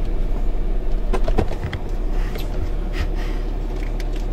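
Cabin noise of a late-model Ram pickup truck being driven, heard from inside the cab: a steady low engine and road rumble. A few short knocks or rattles come between about one and three seconds in.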